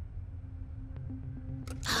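A low, steady hum with a faint click about a second in.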